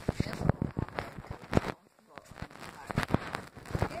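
Phone being handled and set down, giving irregular clicks, knocks and rubbing against its microphone, with a brief lull about two seconds in.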